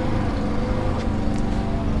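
Small 1.3-litre four-cylinder petrol engine idling steadily with the bonnet open.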